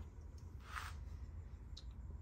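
Quiet handling noise as a steel spring-loaded chisel punch is picked out of its plastic case: a soft brief scrape a little before the middle and a faint tick near the end, over a low steady room hum.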